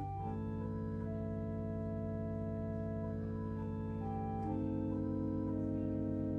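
Organ playing slow, held chords as offertory music in a church service; the chord changes a moment in and again about four and a half seconds in.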